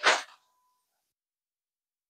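A brief soft rustle right at the start, then near silence.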